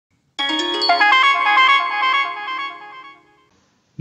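A short electronic jingle of quick stepped notes that starts about half a second in and fades out a little after three seconds.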